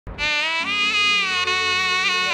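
Shehnai playing the opening phrase of a theme tune: a buzzy, reedy melody with small bends in pitch. A low steady drone joins beneath it about half a second in.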